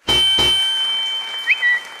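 Show segment-intro stinger: two quick hits open onto a long, steady high ringing tone that slowly fades, with a couple of short rising chirps about one and a half seconds in.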